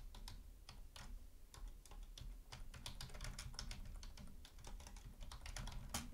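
Computer keyboard being typed on: a faint, irregular run of key clicks, several a second.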